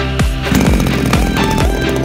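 Electronic dance music with a steady kick-drum beat. Underneath it, a gasoline chainsaw engine starts up about half a second in and keeps running.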